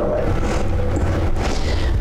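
Low rumbling noise with a rustling hiss, swelling a little about a second in.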